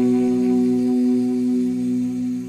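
A man's voice chanting Quranic recitation, holding one long steady note.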